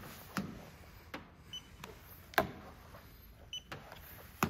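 Paint thickness gauge probe being set against the painted metal roof and pillar of a Kia K5: a few light clicks, the sharpest about two and a half seconds in. The gauge gives two short high beeps as it takes readings.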